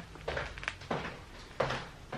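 A few short, soft knocks and clicks, spaced irregularly over low room noise.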